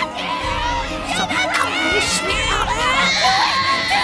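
Newborn babies crying loudly, several wailing cries overlapping. About three seconds in, a woman lets out a long, high scream.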